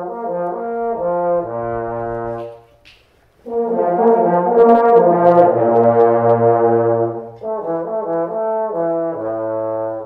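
A large ensemble of trombones playing sustained chords together as a warm-up, with the harmony shifting every second or so and a low bass note entering beneath. They break off briefly about three seconds in, then return louder before easing back.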